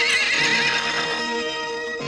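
A horse whinnies, a quavering cry lasting about a second, over orchestral film music with held string tones.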